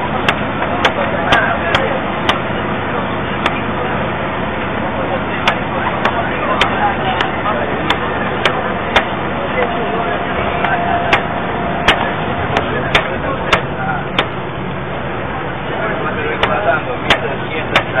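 Steady engine and road rumble inside a bus, heard through a low-quality security-camera microphone, with frequent sharp clicks and muffled voices in the background.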